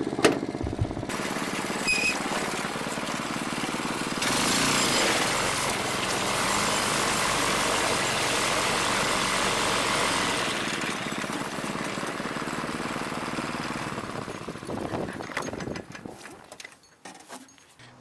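Go-kart's small gasoline engine running under way, louder for a stretch in the middle, then dying away near the end as the kart comes to a stop.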